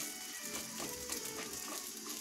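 Onion-rice adai sizzling in oil on a hot tawa, a fine, steady crackle of frying. A few faint steady tones run underneath.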